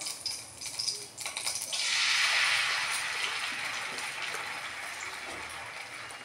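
Batter ladled into a hot oiled pan, sizzling suddenly about two seconds in and slowly dying down. A few light clicks of the ladle come before it.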